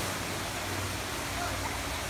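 Steady rushing background noise with a low hum, and faint voices in the distance.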